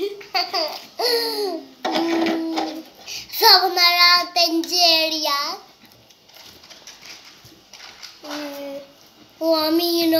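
Children's voices: short exclamations and babbling, with a long drawn-out high-pitched call from about three and a half to five and a half seconds in, a quieter lull, then more voice near the end.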